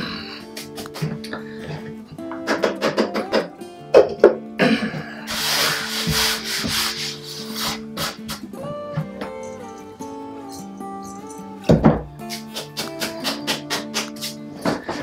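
Hands rubbing together and crumbling dry powdered blueberry and meat mix over a glass bowl, with a longer rustling rub about five to seven seconds in, and scattered light clicks. Background music with a slowly changing melody plays throughout.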